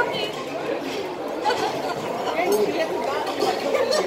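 Indistinct chatter of many voices in a busy dining room, steady throughout, with no single voice standing out.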